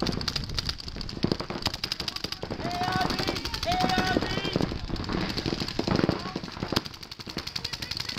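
Paintball markers firing rapid strings of shots, many pops a second and overlapping, with voices shouting briefly about three and four seconds in.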